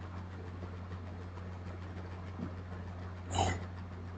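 Low steady hum of background noise, with one short breathy noise a little over three seconds in.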